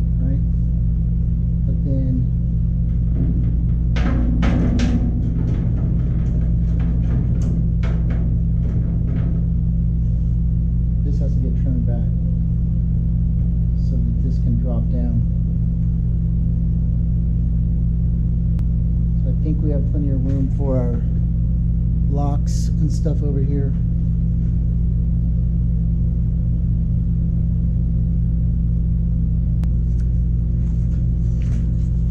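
Light clicks and knocks of metal parts as a power window regulator is handled and fitted into a truck's bare steel door, over a loud, steady low hum.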